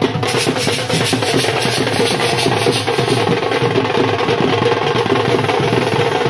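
Loud, fast, continuous drumming with music, a steady dense beat with no break.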